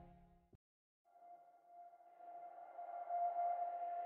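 Ambient background music cuts off about half a second in, leaving a moment of near silence. Then a single steady electronic drone tone fades in and slowly grows louder.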